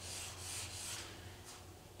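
A drawing stick rubbing across a large sheet of paper on an easel pad in a few soft, quick strokes.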